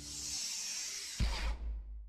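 A steady high hiss for about a second, cut off by a single low thump with a short rumble after it, then fading away.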